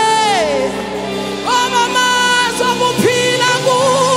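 Live gospel worship music: a female lead singer holds long notes into a microphone and slides down between them, over a band's steady sustained accompaniment.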